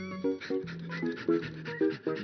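Light cartoon background music with a short repeating figure, over which a cartoon dog pants.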